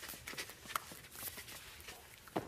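Faint taps and scuffs of hands and knees on a hard studio floor as a person crawls on all fours.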